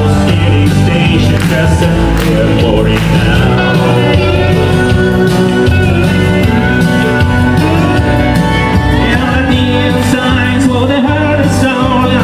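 Live country music: an amplified acoustic guitar strummed over a backing of bass and drums, loud and steady.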